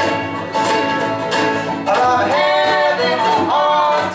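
A small acoustic band playing live: strummed acoustic guitar and mandolin with a sung vocal line that carries through the second half.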